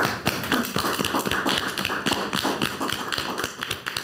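A small group of people applauding, a dense patter of hand claps that thins out near the end.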